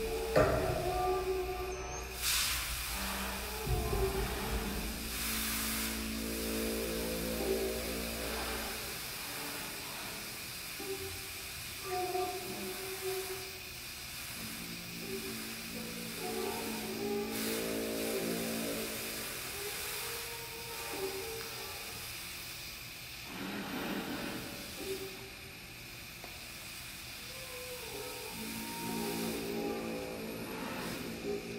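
Live improvised ensemble music: slow, sustained pitched notes and chords from a small band with violin, over a low drone that drops out about nine seconds in, with a few brief noisy swells.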